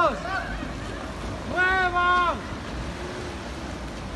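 A person shouts one long, drawn-out yell, the kind of warning cry heard on either side ("¡Muevan los carros!"), over a steady rushing noise that runs throughout.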